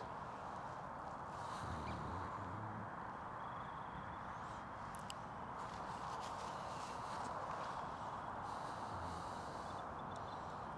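Faint, steady outdoor background hum with a few faint ticks.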